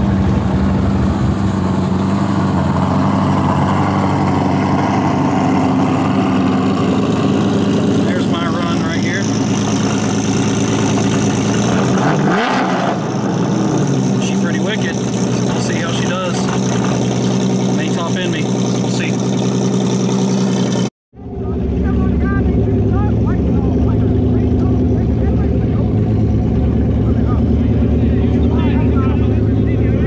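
Twin-turbo Coyote 5.0 V8 of a 2014 Mustang idling steadily, with a brief rev that rises and falls about 12 s in. The sound breaks off for a moment about two-thirds of the way through, then the idle carries on.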